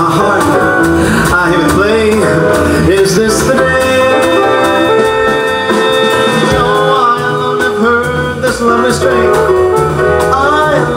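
Live jazz combo of upright double bass, drums and keyboard playing, with a male voice singing a bending, pitched melody over it that holds some long notes in the middle.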